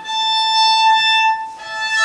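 Violin playing a natural octave harmonic (flageolet), the string lightly touched at its midpoint with the fourth finger and bowed near the bridge: one clear, steady high note held for about a second and a half. A second, lower note joins near the end.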